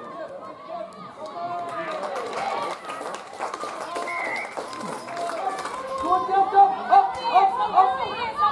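Spectators and players shouting and cheering as a try is scored, a mix of many overlapping voices. The noise swells from about two seconds in, and high excited shouts crowd together near the end.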